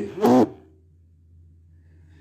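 A man's voice finishing a word, then a pause with only a faint, steady low hum of room tone.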